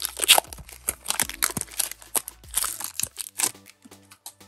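Foil wrapper of a Pokémon TCG booster pack being torn open and crumpled by hand: crisp tearing and crinkling for about three seconds, thinning to a few small crackles near the end as the cards are drawn out.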